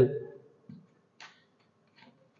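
Faint handling sounds of a patch lead being plugged into a terminal on an electrical trainer panel: a soft bump, then a single short click about a second in.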